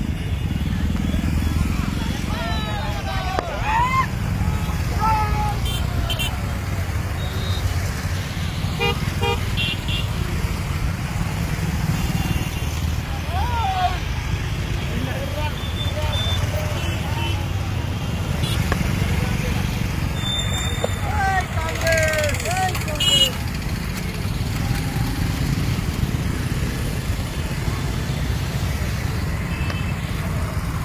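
Motor vehicles in a convoy running with a steady engine rumble. Horns toot a few times and people shout over it.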